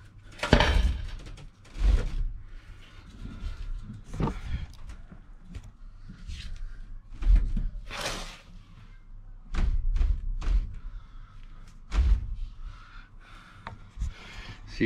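Irregular knocks and clunks, a dozen or so at uneven intervals, as a car's gearbox is worked loose and lowered by hand on a strap and jack.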